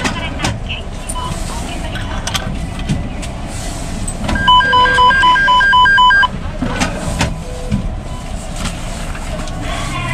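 Bank ATM beeping rapidly, about four or five short beeps a second for just under two seconds, prompting for coins to be taken back from the coin tray. Scattered clicks and knocks from the machine and coins come before and after the beeps.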